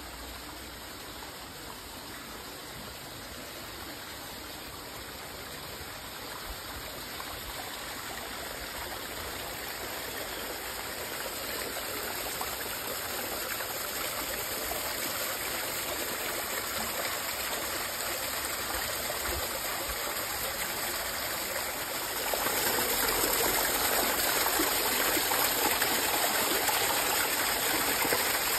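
Spring water running along a shallow stone rill. It grows steadily louder, with a further step up in level about three-quarters of the way through.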